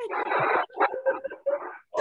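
Laughter: a long breathy wheeze, then several short, separate bursts.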